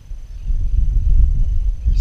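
Wind buffeting the camera microphone: a loud, uneven low rumble that rises about half a second in and keeps going.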